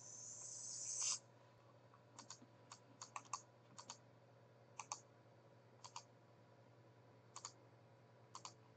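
Sparse, quiet clicks from working a computer, about a dozen, many in quick pairs. They come after a rising hiss that cuts off suddenly about a second in.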